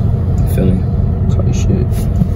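Car engine idling, a steady low rumble heard from inside the cabin, under a few words of talk.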